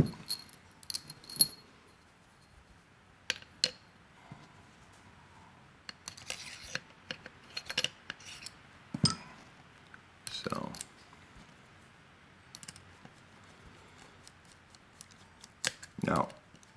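Scattered light clicks and clinks of metal grinder parts and a screwdriver being handled, the screwdriver set down and then turning the small screws in the top plate of an OE Lido hand coffee grinder.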